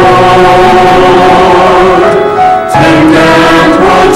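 Mixed-voice church choir singing in sustained chords, with a brief break between phrases about two-thirds of the way through before the voices come back in.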